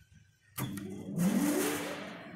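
Main electric motor of a mechanical punch press starting up: it comes on suddenly about half a second in, and its hum rises in pitch as it spins up to speed, then settles to a steady tone.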